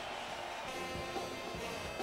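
Television broadcast music sting: sustained tones come in about a second in, over the noise of an arena crowd.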